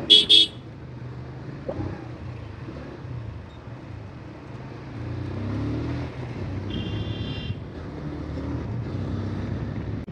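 Motorcycle engine heard from the rider's seat as the bike accelerates along the road, its note rising and growing louder about five seconds in. A brief high-pitched beep comes about seven seconds in.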